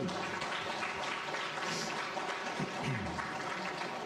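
Congregation applauding, a steady clapping that follows straight on from the end of a song.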